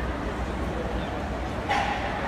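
A dog gives one short bark near the end, over a steady background hubbub of voices and hall noise.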